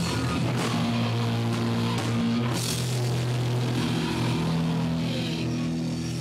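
A rock band playing: held guitar and bass notes that change every second or two, over drums and cymbals.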